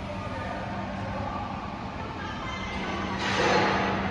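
A steady low hum in a factory hall while someone climbs steel stairs, with a short rushing noise about three seconds in that is the loudest sound.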